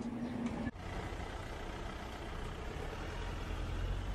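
City street ambience: a steady low rumble of vehicle traffic. It changes abruptly just under a second in, where a steady hum cuts off, and the rumble grows a little toward the end.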